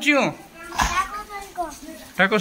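Young children's voices in short calls and exclamations, with a single brief knock near the middle.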